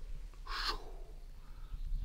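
Lid lifted off a cauldron of crayfish at a rolling boil: a short hiss about half a second in, then a low steady rumble.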